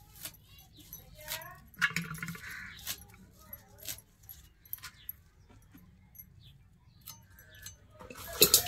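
Bangles clinking with irregular sharp clicks as amaranth stems are cut against an upright blade set in a wooden block.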